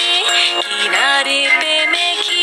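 A children's song: a sung voice gliding between notes over backing music.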